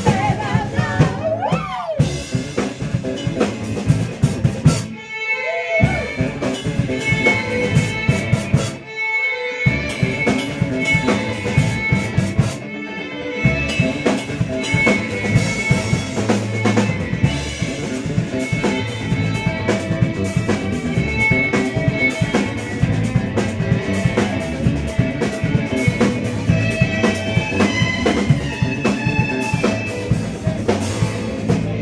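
Live band playing an instrumental passage on drum kit, guitar and fiddle. The band drops out briefly twice, about five and nine seconds in.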